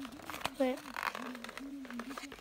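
Speech: a child says "wait", with a low, steady voice sounding underneath.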